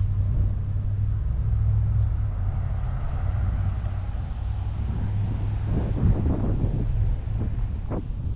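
Steady low rumble of wind on the microphone, with road traffic passing along the beachfront road and the wind gusting harder about two-thirds of the way through.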